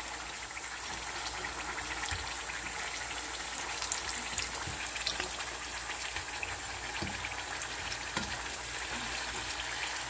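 Thin slices of Japanese sweet potato shallow-frying in oil in a nonstick pan over low-medium heat: a steady, even sizzle with a few faint scattered crackles.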